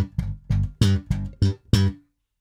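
Electric bass played slap style: a quick run of about eight short, percussive notes, mixing thumb slaps with finger plucks (pops) using the index and middle fingers. The notes come at about four a second, each cut off sharply, and stop just before the end.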